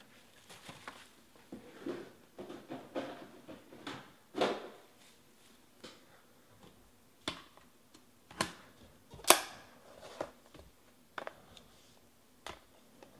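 Hands handling a trading-card box and its packaging: soft rustling, then a string of sharp taps and knocks as the box is set down and worked open, the loudest about nine seconds in.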